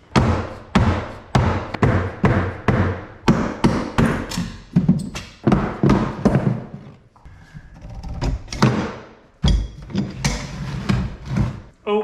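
Holdfasts and a wooden handscrew clamp being knocked loose, and a heavy wooden slab handled and set down on a wooden workbench: a run of sharp wood-and-metal knocks about two a second, a quieter stretch, then a heavy thud about nine and a half seconds in and a few more knocks.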